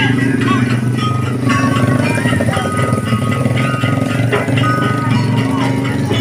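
Loud street-parade din: music from the thethek parade mixed with motorbike engines and a crowd's voices.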